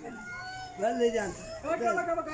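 A child wailing in drawn-out cries that rise and fall in pitch, loudest about a second in and again just before the end.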